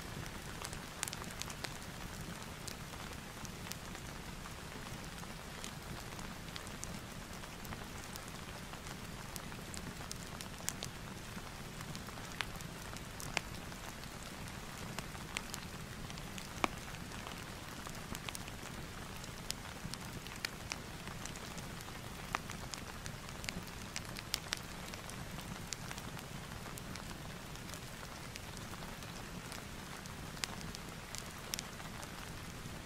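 Steady rain ambience mixed with a crackling fireplace: an even wash of rain with many small scattered pops and ticks throughout.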